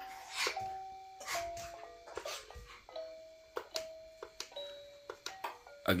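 Star projector musical crib mobile playing its electronic lullaby: a slow melody of simple held notes, with a few light clicks among them.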